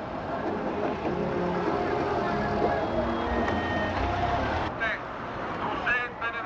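Crowd chatter along a road, with a car engine rumbling past for a few seconds in the middle.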